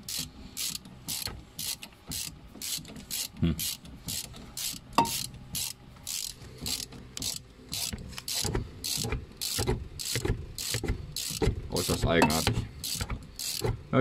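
Ratchet wrench clicking steadily, about three clicks a second, as a rusty brake caliper bolt is turned out with a socket and extension.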